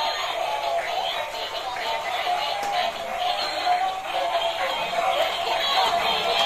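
Built-in electronic songs with synthetic singing from battery-powered dancing toys, a stepping melody playing at a steady level.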